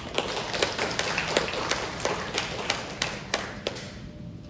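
Audience applauding, a dense patter of hand claps with single sharp claps standing out, dying away near the end.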